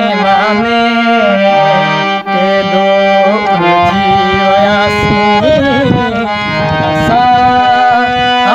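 Harmonium playing held chords and melodic lines in a Sindhi song, with a man's singing voice coming in and out over it.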